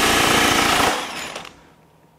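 Durofix RI60176 60V brushless 1-inch impact wrench hammering loudly in reverse, breaking free a nut torqued to 2,000 ft-lbs. The rapid hammering stops about a second in and tails off over the next half second.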